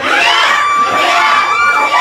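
A party crowd cheering and shouting together, many voices overlapping, with one long high held note running through most of it.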